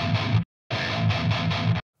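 Distorted electric guitar playing low, chugging metal rhythm through a noise gate plugin with its threshold turned up. The gate cuts the sound off abruptly twice, leaving dead silence between phrases. The threshold is raised to make the gate close fast enough, because the gate's detector is still hearing the guitar's low end.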